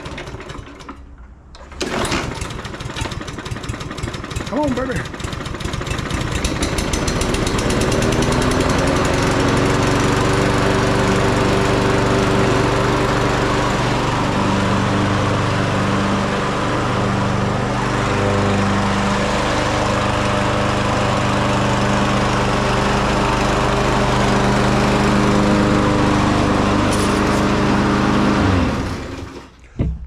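Small four-stroke push-mower engine (Briggs & Stratton EXi 625) starting up about two seconds in. It runs rough and builds up, picks up to a steady governed speed around eight seconds in, runs evenly, and is shut off shortly before the end.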